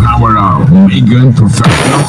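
A loud, distorted voice blaring from a large stacked street sound system, over deep bass that fades soon after the start.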